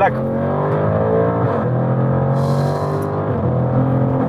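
Lamborghini Urus's tuned 4.0-litre twin-turbo V8 under full throttle from about 90 km/h, heard from inside the cabin. The engine note climbs, drops at an upshift about a second and a half in, then pulls again.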